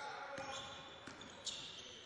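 Faint on-court sounds of a basketball game: a basketball bouncing on the wooden floor, with a sharper knock about one and a half seconds in.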